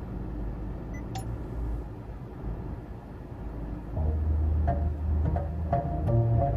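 Honda Civic's infotainment system playing through the car's speakers: a short click about a second in as a video track is skipped, then music starts about four seconds in with a loud, steady deep bass drone.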